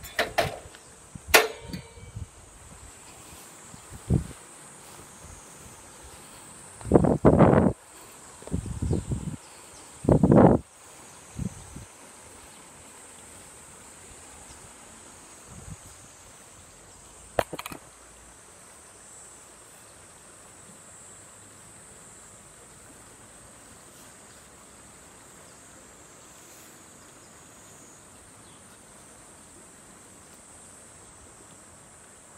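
Handling noise from a phone: a run of knocks and rubbing thumps over the first dozen seconds as it is moved against a bag and set down, then one more sharp knock a few seconds later. Behind it, a faint steady high insect buzz with the wash of a shallow river.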